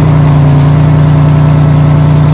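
Bus engine sound effect running steadily, a loud, deep, even engine hum with no change in pitch.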